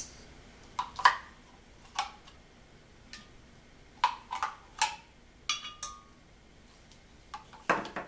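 A tablespoon scooping yogurt, clinking and tapping against the yogurt tub and the blender jar: a dozen or so short, irregular clinks, some with a brief ring.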